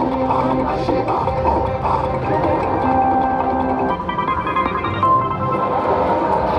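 Video slot machine's free-spin bonus music playing steadily as the free spins run.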